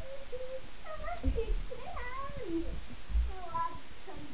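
A run of high, wavering meow-like calls, several in a row, with a few low thumps on the floor.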